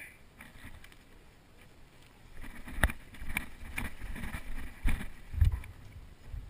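Wind buffeting a head-mounted camera microphone while the wearer walks on dry dirt and brush. Footsteps and the knock of gear and rifle come as sharp clicks about half a second apart in the second half, with a heavier thump near the end.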